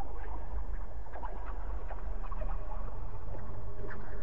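A steady low drone with a scattered run of short, quick squeaks or chirps over it.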